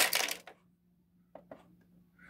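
Plastic Playmobil figure clattering and knocking against the plastic toy-house floor as it is handled, a quick burst of clatter at the start, then two light clicks as it is set down.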